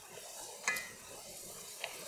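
Pork ribs simmering in cola and water in a pan, a faint steady sizzle. A short metallic clink with a brief ring comes about a third of the way in, and a light tick near the end.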